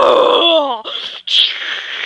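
A girl's voice making a loud, strained imitation of a strange noise: a groan that slides down in pitch and fades, followed by a short laugh.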